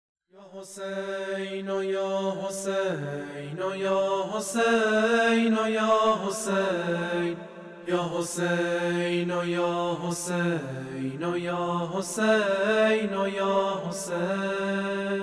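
A solo voice chanting a mournful religious elegy for Imam Hussein in long, wavering held notes that slide between pitches. A sharp beat falls about every two seconds under the singing, which starts just after a moment of silence.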